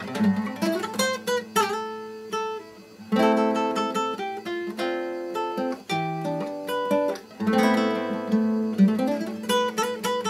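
Nylon-string classical guitar played solo and fingerpicked, in a slow piece of single notes and ringing chords. The playing thins out to a quiet passage a little before three seconds in, then a fuller chord comes in.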